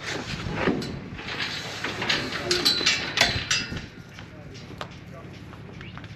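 A run of metallic knocks and rattles from steel livestock gate panels and a stock trailer, over a noisy background. It quietens after about four seconds.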